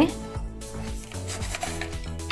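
Cloth rubbing against plastic as the fabric pants of a Catch the Fox game's fox figure are pulled out through its hollow plastic body, over quiet background music.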